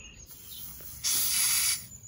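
A short, loud hiss of air escaping from a bicycle tyre valve as a floor pump's hose head is pushed onto it, starting about a second in and stopping after under a second.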